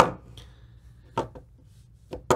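One sharp knock on a tabletop right at the start, dying away over about half a second, as a small plastic digital hygrometer is set down. A faint high tone and a shorter, softer knock follow about a second in.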